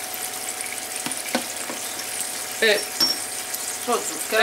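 Small onions sizzling steadily in a frying pan in oil and balsamic glaze, with a few light clicks of a wooden spatula stirring them against the pan.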